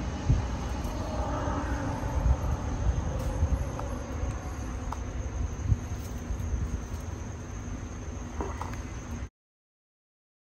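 Low steady background rumble with a faint steady high tone above it, then a sudden cut to complete silence about nine seconds in.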